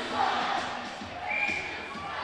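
Crowd murmur and indistinct distant voices filling a large ice hockey arena.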